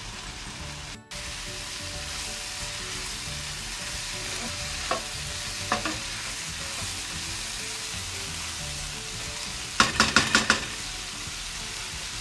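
Cubed bottle gourd and chicken sizzling in a frying pan while a spatula stirs and scrapes through them. There are a couple of clicks midway, and a quick run of spatula clacks against the pan near the end.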